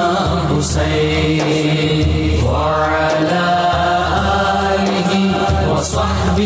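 A durood (salawat) chanted in a slow melismatic style, one voice drawing out long wavering notes over a steady low drone.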